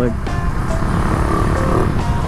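Motorcycle engine running at road speed with wind rumble on the mic, under background music with held notes.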